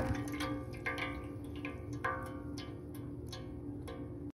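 The Lelit Bianca espresso machine's vibratory pump cuts off at the end of the shot, and the loud hum stops. After that come light ringing plinks, about one every half second to second, with chime-like tones that linger.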